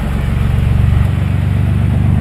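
1991 GMC Syclone's turbocharged 4.3-litre V6 pulling away from a standstill, a steady, deep engine note that grows slightly louder as the truck gets under way.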